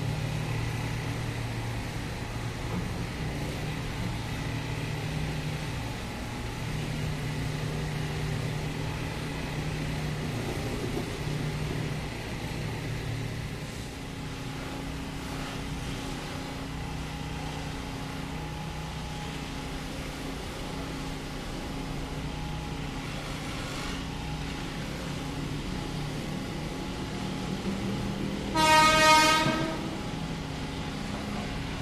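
KRL commuter electric train humming steadily, low and even, for the first dozen seconds. Near the end an approaching electric commuter train sounds its horn once, a loud, rich blast lasting about a second.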